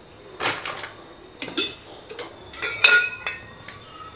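Steel kitchen utensils clinking and clattering a few times. The loudest clink, about three seconds in, rings briefly.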